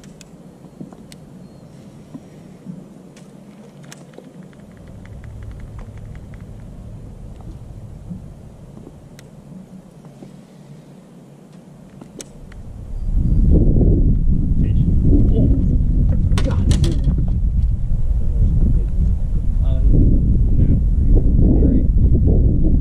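Quiet outdoor background with a few faint clicks, then a little over halfway through a loud, gusting low rumble of wind buffeting the microphone takes over.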